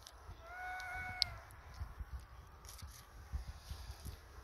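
A faint, high, thin squeaky call held steady for about a second, ending near a small click, followed by faint low rustling.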